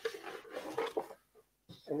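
Quiet talking with a few soft knocks, a brief near-silent pause, then louder speech starting near the end.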